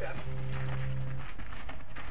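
A steady low hum with a few held overtones, which cuts off a little over halfway through.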